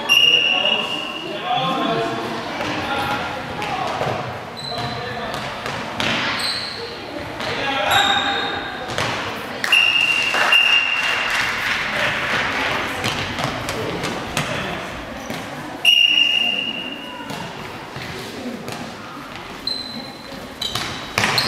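Handball game in a large sports hall: the ball bouncing on the court floor and shouting voices, with the sound echoing in the hall. A referee's whistle blows three short single blasts, near the start, about ten seconds in and about sixteen seconds in.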